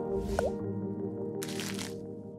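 Logo-intro music with held chords, overlaid with splashy sound effects: a short bloop about half a second in and a swish near the end.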